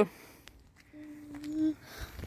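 A person's voice humming one short steady note about a second in, otherwise faint outdoor quiet.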